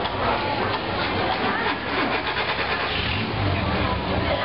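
Long-tail boat engine running, with rapid even pulsing in the first half and a low rumble near the end, over people's voices.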